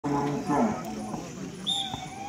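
A voice calling out, with one falling shout. Near the end comes a short, high volleyball referee's whistle blast signalling the serve, then a sharp click.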